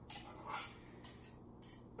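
A kitchen knife picked up and handled at a wooden cutting board: two soft knocks and clinks of the blade in the first second, then faint handling.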